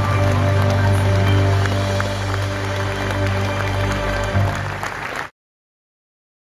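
Live band of keyboard, guitars and drums holding a sustained chord, with audience applause over it. The sound cuts off abruptly a little over five seconds in.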